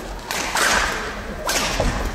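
Badminton rally: two sharp racket strikes on the shuttlecock, about a second apart, with the swish of the swings.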